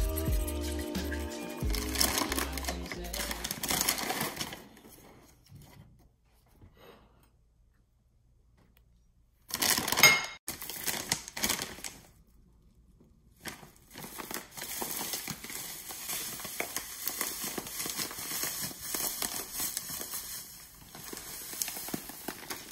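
Background music with a beat, ending about four seconds in. After a few seconds of near silence, a plastic bag of panko breadcrumbs crinkles in bursts, then rustles and crackles steadily for several seconds as the bag is handled and the crumbs are tipped out into a glass bowl.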